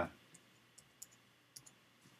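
A few faint, sparse computer keyboard keystrokes as a word is typed into a code editor.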